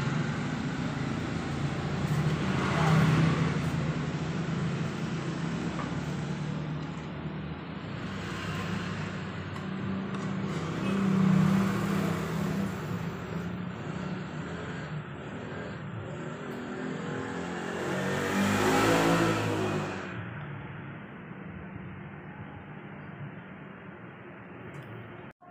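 Motor vehicles passing outside over a steady low engine hum, swelling and fading three times, the loudest pass coming near the end.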